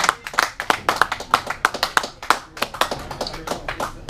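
Applause from a small audience, a quick patter of hand claps that thins out near the end.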